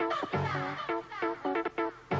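1990s house music from a DJ mix taped off the radio onto cassette: short synth chord stabs repeating in quick succession over a bassline.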